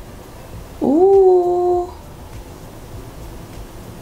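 A single vocal call about a second long, starting about a second in: it rises in pitch, then holds steady before stopping.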